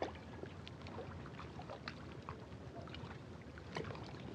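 Faint, irregular small splashes and lapping of lake water at the shore's edge, over a low steady hum.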